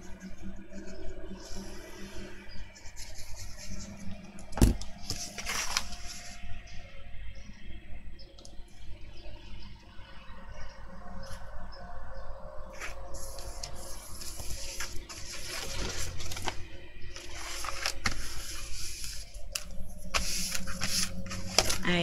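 Sheets of cardstock being handled and slid over a hard tabletop: irregular rustling and scraping of card, with one sharp knock about five seconds in.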